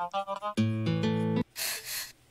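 Quiz relay of very short intros from three popular Korean songs of 2000, played back to back: a few quick plucked notes, a held chord for about a second, then a brief scratchy noise near the end that sounds like a broom sweeping the floor.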